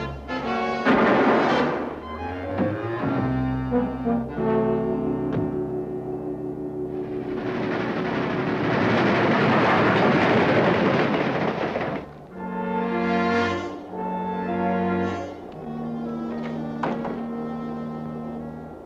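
Dramatic orchestral underscore with held brass chords and timpani. From about seven to twelve seconds in, a loud rushing noise of a passing train swells over the music and then drops away, and the brass returns.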